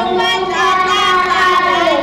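A young child singing into a microphone, holding long notes.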